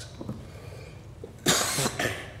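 A single short, loud cough about one and a half seconds in, after a stretch of quiet room.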